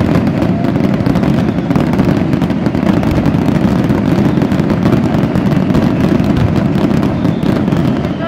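Aerial fireworks and firecrackers going off in a dense, continuous barrage: many overlapping bangs and crackles with no pause between them.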